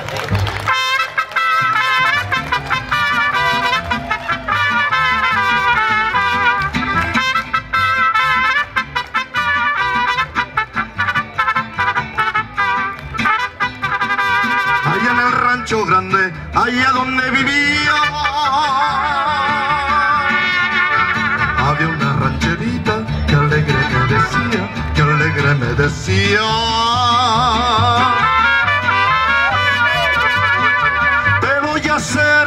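Mariachi band playing live through a PA, two trumpets leading the melody over strummed guitars and an accordion, with a steady rhythmic beat underneath. In the second half the trumpet notes waver with a wide vibrato.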